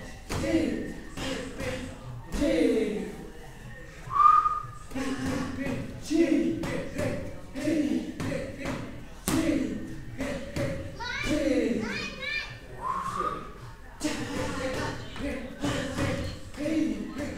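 Punches and kicks landing on Thai pads in a steady run of sharp thuds, with short wordless vocal sounds between the strikes. A brief whistle-like tone sounds twice, about four seconds in and near thirteen seconds.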